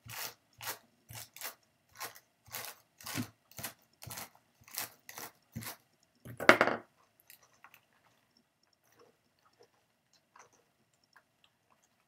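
A brush scratches over wool on the wire carding cloth of a blending board in quick strokes, about two a second, packing the fibers down. A louder stroke comes about six and a half seconds in, then only faint ticks.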